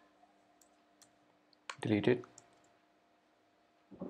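A few faint clicks of a computer keyboard and mouse as shortcut keys are pressed, with a faint steady low hum underneath.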